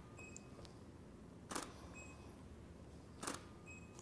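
Two camera shutter releases, about a second and a half in and again about a second and a half later, each followed shortly by a faint short high beep.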